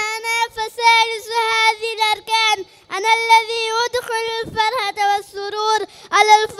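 A boy singing an Arabic nasheed into a microphone, solo and without instruments, in long held notes with small pitch turns. There is a short breath pause about three seconds in.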